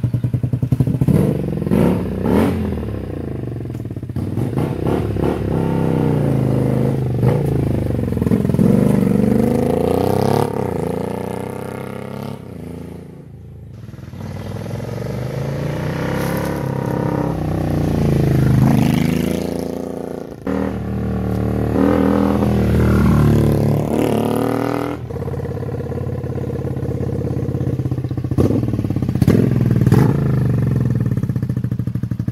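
Cruiser motorcycle engine running after being started, its note rising and falling with the throttle as the bike is ridden. It fades away about halfway through, then comes back loud.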